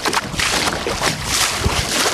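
Water rushing and slapping along the wooden hull of a small sailboat under way through choppy water, swelling and easing in surges, with wind buffeting the microphone.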